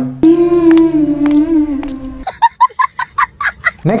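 A held humming tone for about two seconds, then a quick run of a dozen or so short pulsed calls, about eight a second, ending just before speech resumes.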